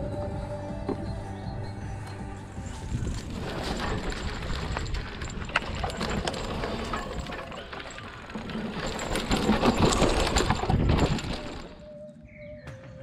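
Music fades out over the first few seconds. It gives way to the riding noise of a hardtail e-mountain bike going down a dirt forest trail: a steady rush of tyres on the ground with many short rattles and knocks.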